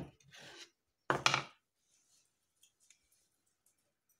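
Small metal trowel scraping and stirring in a plastic bucket of thin cement slurry mixed without sand, with one louder scrape about a second in. Faint small clicks and rustles follow.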